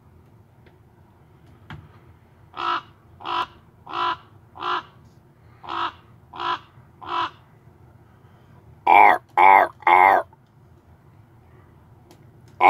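Crow cawing: a run of seven short caws about two-thirds of a second apart, then three much louder, longer caws that slide down in pitch.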